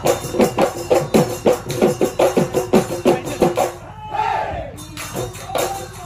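Assamese Bihu folk music: dhol drums beaten in a fast driving rhythm of about five strokes a second, with metallic cymbal jingling over them. The high jingling drops out briefly about four seconds in, then the beat picks up again.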